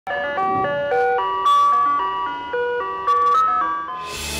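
Ice cream truck jingle: a simple melody played in bright, chime-like electronic notes.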